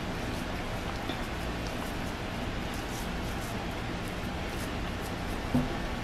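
Steady kitchen background noise, a low even hiss with faint scattered light ticks and crackles, with no speech over it.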